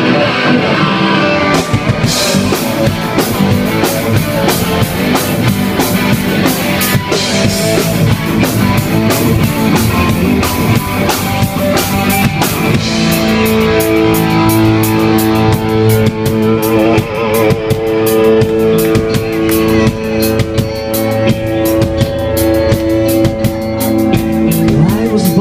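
Live rock band with electric guitars and a drum kit playing loud, with no singing yet. The drums come in about two seconds in, and about halfway through the guitars move to long held chords over faster cymbal hits.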